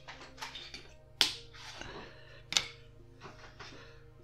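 Sharp clicks of small model-kit parts being picked up and handled: one loud click just over a second in and another about a second later, with a few fainter ticks, over soft background music.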